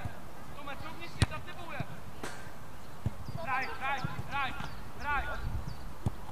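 Children's voices calling out during play, with a run of short high-pitched shouts past the middle. A single sharp thud of a football being kicked stands out about a second in, followed by a few fainter knocks.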